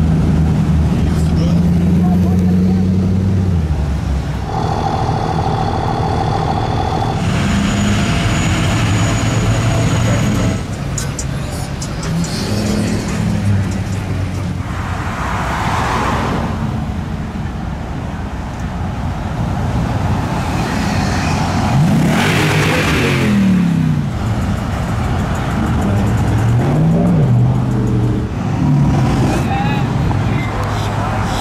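Pickup trucks cruising past in slow street traffic, their engines running, with a few revs rising and falling near the end.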